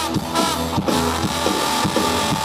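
Live rock band playing loud: a trombone soloing over distorted electric guitars and drums, heard from close to the stage.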